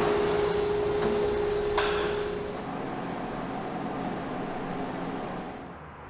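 Pipistrel Panthera's retractable landing gear retracting with the aircraft on jacks: a steady whine from the gear actuator, a sharp knock about two seconds in, the whine stopping shortly after, then a lower hum that fades out.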